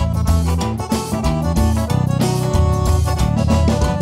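Forró band playing an instrumental passage without vocals: accordion melody over a steady bass and drum rhythm.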